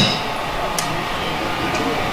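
A short pause in a man's speech, filled by steady background noise, with one faint click about a second in.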